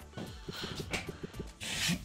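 Online slot game sound effects: a quick run of soft taps as fruit symbols drop into the grid of a new spin. A rising rush of noise comes in near the end.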